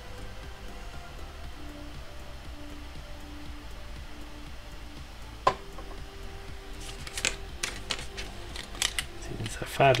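Steady low hum under faint soft background music, with a single sharp click about five and a half seconds in. Near the end come a few light clicks of plastic model parts being picked up and handled.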